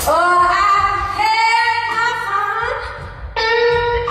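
A woman singing a wordless blues line: notes slide up into place and are held, ending on a long sustained note near the end, with little accompaniment underneath.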